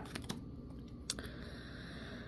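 Faint handling of a deck of tarot cards: a few light clicks and taps of fingernails and card edges, the sharpest about a second in, over a quiet room background.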